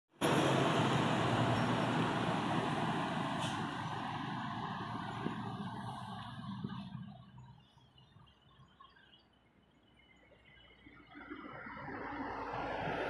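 Diesel truck engine labouring up a steep hill while blowing thick black smoke, with other traffic passing. The sound fades away about seven seconds in, then rises again near the end.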